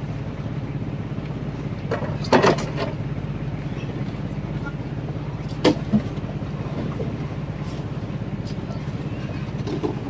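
A boat's engine running steadily with a low drone. Over it, a brief clatter about two and a half seconds in and two sharp knocks around six seconds in, as someone climbs down into the boat's wooden ice hold.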